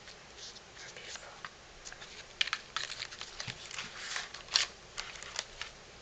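A handmade paper mini album being handled and turned over by hand: irregular light clicks, taps and rustles of cardstock and paper embellishments, with the sharpest taps about two and a half and four and a half seconds in.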